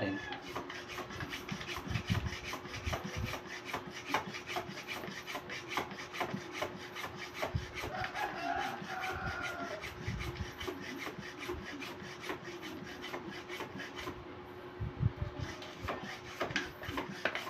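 Small hand pump worked in quick, even strokes, inflating a freshly patched bicycle inner tube inside its tyre.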